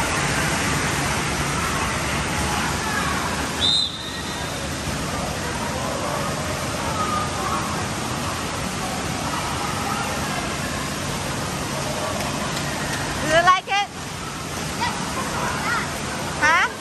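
Steady din of an indoor waterpark pool: rushing, splashing water under a babble of distant voices. A brief high squeal comes about four seconds in, and a child's shout comes near the end.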